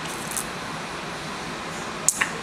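Steady background hiss of room noise, with a brief faint hiss about half a second in.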